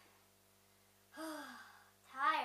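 A child's breathy, voiced sigh, one drawn-out 'haah' that starts about a second in, rises a little in pitch and then falls away.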